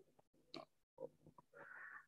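Near silence in a pause between words at a microphone, with a couple of faint clicks and a faint breath near the end.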